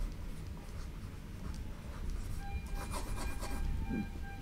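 Stylus scratching and rubbing on a pen tablet in short handwriting strokes, with a cluster of quick back-and-forth strokes in the second half as the words are underlined.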